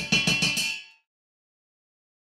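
A metal potato ricer clattering down into a stainless steel sink, ringing for about a second before the sound cuts off abruptly.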